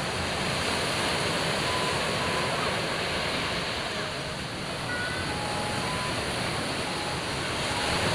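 Ocean surf breaking on rocks and washing back, a steady rushing noise, with a few faint short high tones over it.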